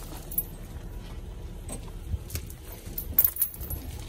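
Steel chain clinking and rattling as it is handled and looped around a shrub's root ball to pull the shrub out. There are a few scattered sharp clinks, with the loudest cluster a little after three seconds.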